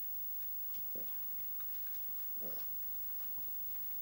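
Quiet room tone in a pause between words, with two faint, brief sounds about one second and two and a half seconds in.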